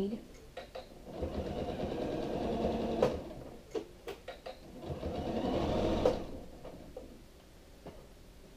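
Janome sewing machine running a straight stitch in two short runs of about two seconds each, stopping between them so the work can be pivoted around a curve. A few sharp clicks come in the pause.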